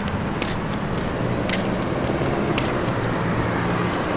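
Steady street noise: a low vehicle or engine hum over a traffic haze, with a few brief sharp ticks.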